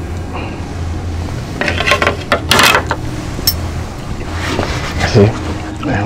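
Fork and knife scraping and tapping on a plate during eating, with a sharp click about three and a half seconds in, over a steady low hum.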